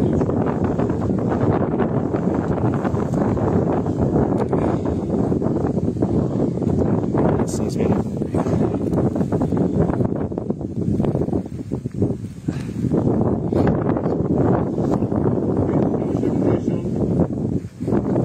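Wind buffeting the phone's microphone: a loud, steady rumbling noise, with rustling and handling sounds as a wet keepnet is hauled up.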